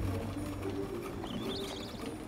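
Quiet film soundtrack: soft sustained music, with a short, wavering, high bird chirp a little past the middle.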